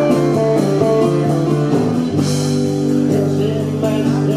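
Live band playing an instrumental stretch between vocal lines: strummed acoustic guitar with bass and hand drums, sustained chords changing every second or so. It sounds a little off because it was recorded from under the main PA speaker.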